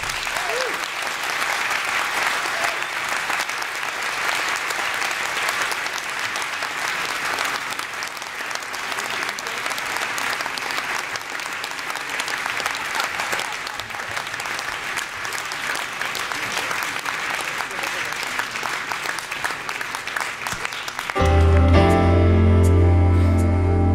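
Concert audience applauding steadily between pieces, a dense patter of many hands clapping. About a second before the end the band's music comes in, with a strong low bass line.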